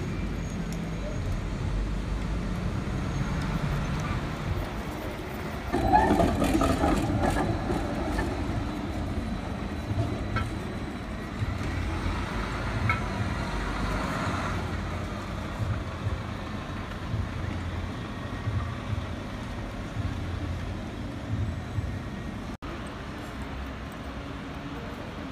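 An articulated Mercedes-Benz Citaro city bus driving past, its engine running with a steady low rumble amid city traffic, louder for a stretch about six seconds in.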